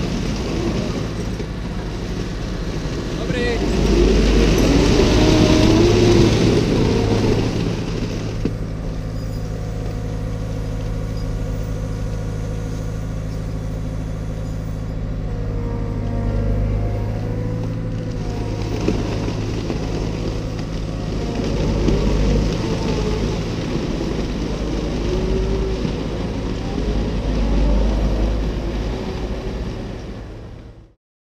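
Diesel engine of a Liebherr 918 Compact wheeled excavator running close by. The note is steady through the middle, with louder spells about four seconds in and again after about twenty seconds.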